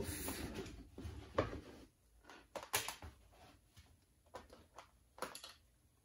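Faint, scattered clicks and taps of small objects being handled, a few short ones spread across the seconds with quiet room tone between them.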